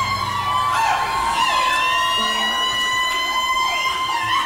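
Siren-like electronic sound effect in a Tejano club remix: a held high synth tone with swooping glides that rise and fall several times. The bass and beat drop out as it starts.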